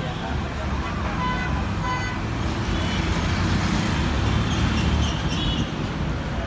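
Street traffic: vehicle engines running nearby with a steady low rumble, loudest in the middle, and two short vehicle horn toots about a second and a half and two seconds in.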